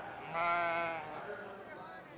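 A lamb bleats once, a single steady call lasting under a second.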